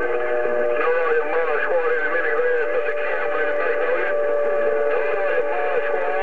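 Receiver audio from a President HR2510 transceiver's speaker: a steady heterodyne whistle with warbling, garbled signals from other stations over it.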